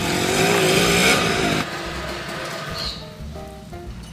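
Small trail motorcycle engine running as the bike rides up, loud with a wavering pitch, then dropping away about a second and a half in. Background music plays underneath.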